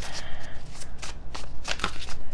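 A deck of tarot cards being shuffled by hand: a run of quick card slaps and rustles.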